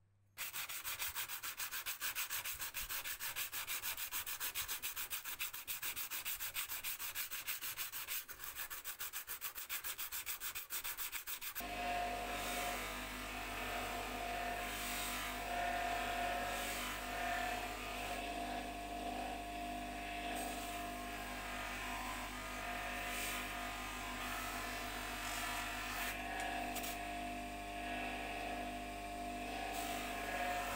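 Rapid, even scraping on rough corroded metal for about the first eleven seconds. Then a bench grinder runs with a steady hum while a flat steel blade is held against its spinning wheel, grinding with an uneven rasp.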